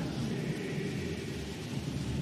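Volleyball arena crowd noise: a steady, even din with no single voice or event standing out.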